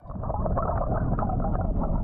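Steady low rush of underwater noise from a recording made beneath the surface beside a blue whale. It is muffled, with nothing in the higher range.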